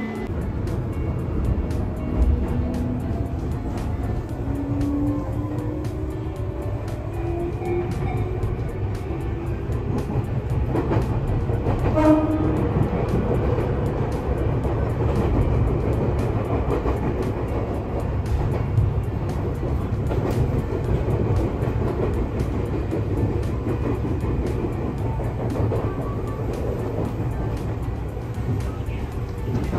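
Train running on the rails, heard from inside the car: a steady rumble of wheels on track with scattered clicks, and a motor whine rising in pitch over the first several seconds as it picks up speed. A brief pitched tone sounds about twelve seconds in.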